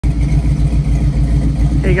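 1970 Dodge Challenger R/T's V8 running at a steady, low idle. The exhaust rumble is loud and even, and a man's voice starts just at the end.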